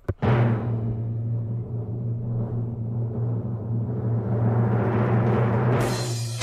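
A recorded drum-roll sound effect: a sustained, steady roll on a deep, timpani-like drum that swells slightly, with a bright crash just before the end.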